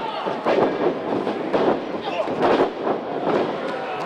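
Thuds of a dropkick landing and a wrestler going down hard on the wrestling ring mat, over the noise of a crowd in the arena.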